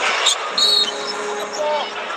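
Arena sound of a live basketball game heard through a TV broadcast: steady crowd noise, with a short high squeak just after half a second in and a held tone running through the rest.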